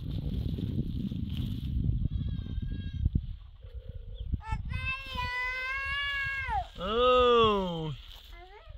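A few seconds of low rustling as a plastic sack and loose soil are handled, then two long bleats from livestock: the first held steady and falling at its end, the second lower, louder, and rising then falling in pitch.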